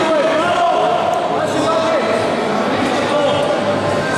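Several voices shouting at once, coaches calling instructions to grapplers during a match.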